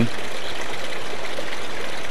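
Steady rush of water from a small waterfall spilling into a rock-lined hot spring pool.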